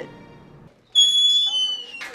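A loud, high-pitched tone starts suddenly just under a second in, holds steady, then drops to a slightly lower note about half a second later.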